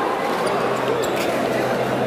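Steady crowd noise of a basketball game in a gymnasium: spectators' voices running together, with the ball bouncing on the hardwood court as it is dribbled up the floor.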